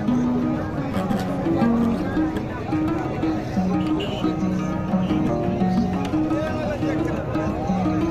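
Background music with a plucked-string melody of short held notes, over indistinct crowd chatter.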